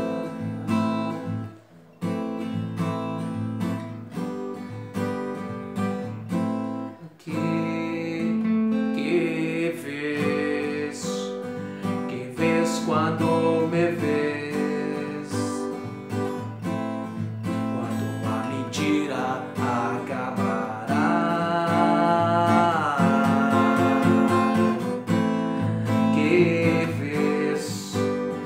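Strinberg acoustic guitar being strummed, playing a rhythmic chord progression with a few brief breaks early on.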